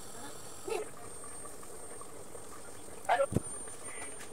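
Leafy greens handled in a stainless steel sink: quiet background with a brief rustle and a sharp knock about three seconds in.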